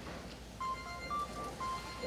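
A short series of electronic beeps, three or four brief steady tones stepping between two close pitches, over a quiet room.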